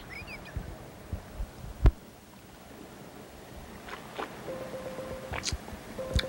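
Phone handled while a call is being placed: a few soft knocks and one sharper tap, then a short steady beep-like tone near the end.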